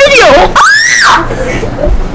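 A child's high, wavering voice, then a shrill scream that rises and falls in pitch for about half a second.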